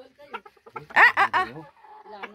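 Chickens clucking: a few faint clucks, then a quick run of four or five louder clucks about a second in.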